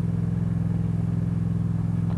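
Motorcycle engine running at a steady cruising speed, a low, even hum with no change in pitch.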